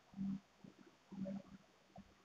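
A man's voice in two faint, short, low murmurs, one just after the start and one a little after a second in.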